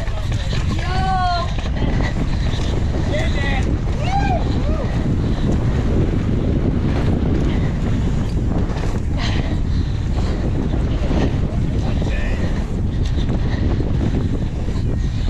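Heavy wind buffeting on a mountain-bike rider's camera microphone at speed, over a constant low rumble from riding down a rough dirt downhill track. Spectators shout a few times in the first few seconds.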